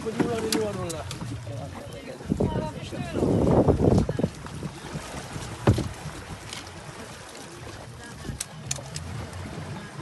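Brief voices of the crew on a small open fishing boat, with handling noise: a loud burst of noise lasting about a second, about three seconds in, and a sharp knock a little before the six-second mark, then a few light clicks.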